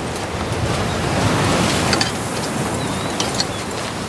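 Sea surf breaking on a beach with wind, a wave swelling and falling away about a second in. A few light clicks sound over it near the middle and again later.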